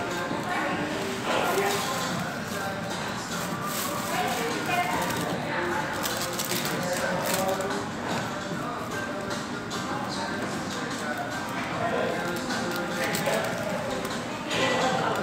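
Restaurant dining-room ambience: background chatter and music, overlaid with frequent rubbing and knocking from a denim jacket brushing against the phone's microphone.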